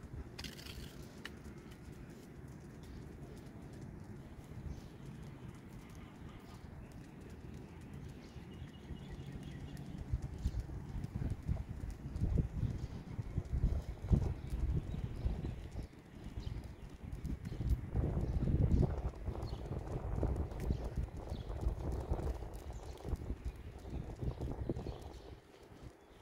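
Footsteps on a concrete footpath while two huskies are walked on leads. The footfalls are uneven low thuds that become louder and more frequent from about ten seconds in.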